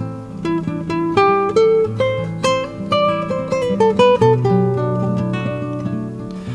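Classical guitar improvisation: a quick run of single plucked notes over low bass notes that ring on for a second or two.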